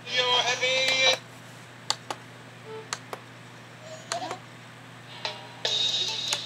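A children's video soundtrack, voices and music through a TV speaker, in two short bursts of about a second each, at the start and near the end, with scattered sharp clicks between, as the VHS tape is switched between play and fast-forward.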